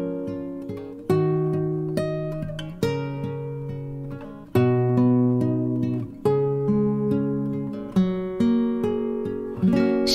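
Instrumental passage of a Mandopop ballad: an acoustic guitar plays slow chords, about one a second, each left to ring and fade, with no singing.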